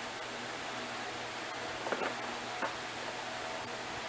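Steady background hiss of a quiet room recording, with two faint short clicks a little after halfway.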